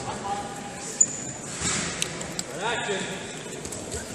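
Voices echoing in a large sports hall, one calling out near the end. About a second in there is one sharp, brief high squeak, with light footfalls of wrestling shoes on the mat.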